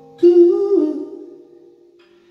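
A man's voice sings one long wordless note, starting loud about a quarter second in, bending slightly up and back down, then fading; an acoustic guitar chord rings out quietly underneath.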